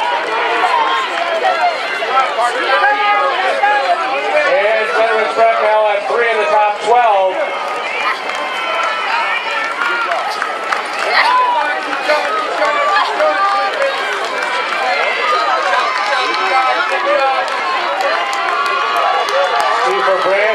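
A crowd of spectators shouting and calling out, many voices overlapping at once.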